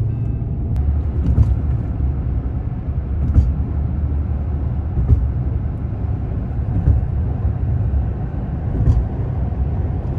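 Steady low rumble of a car driving at highway speed, heard from inside the cabin: tyre and engine noise, with a few faint ticks.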